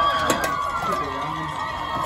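Football crowd cheering and calling out as the game clock runs out, many voices overlapping, with a steady high tone underneath.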